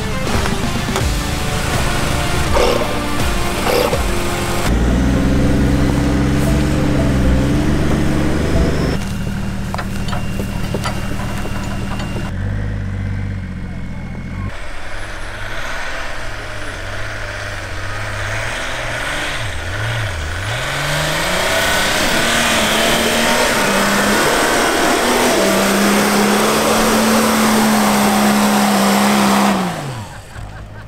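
Off-road 4x4 trucks driving hard through snow, engines revving under load with tyre and snow noise. Near the end one engine's note climbs and holds steady.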